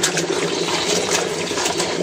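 Tap water running steadily into a sink as wet cloths are rubbed under the stream.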